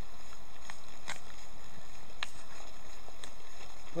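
A brush swept lightly over a stone wall's fresh lime mortar joints, flicking off loose crumbs, against a steady background hiss with a few faint clicks.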